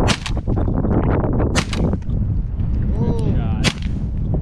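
Three shotgun shots from a semi-automatic shotgun at flying geese: one right at the start, one about a second and a half in, and one near the end. A short honk sounds just before the last shot, over steady wind rumble on the microphone.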